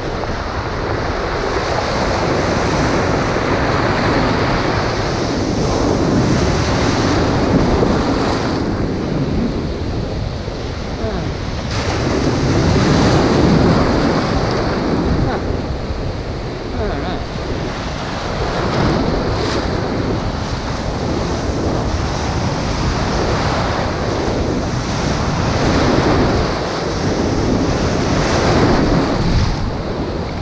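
Rough high-tide surf surging and washing against a boulder revetment, swelling and easing every few seconds, with wind buffeting the microphone.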